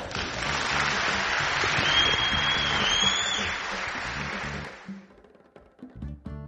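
Audience applauding over background music, the clapping fading out about five seconds in. A single high whistle sounds near the middle.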